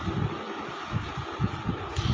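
A pause in a man's speech, filled with steady background hiss and irregular low rumbling thumps, several a second.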